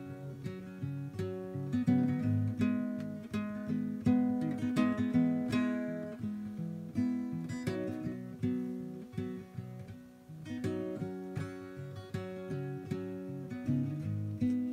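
Solo acoustic guitar playing an instrumental passage of picked notes and chords, with no singing. The playing drops quieter for a moment about ten seconds in.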